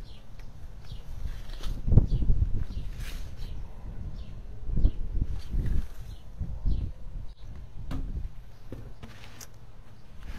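Footsteps and handling noise: irregular low thumps and knocks as plastic nursery pots are moved and set down. The loudest knock comes about two seconds in, with another around five seconds.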